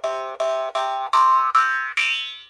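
Nepalese small murchunga, a jaw harp in the key of C, plucked in a steady rhythm of about five strikes in two seconds. Each twang rings over a constant drone while a bright overtone on top moves up and down, giving a melody.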